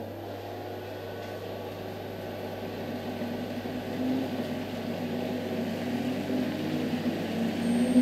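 Schwalbe G-One Speed gravel tyre spinning up on a rolling-resistance test drum: a steady machine hum with tyre roll noise, growing gradually louder as the wheel gathers speed.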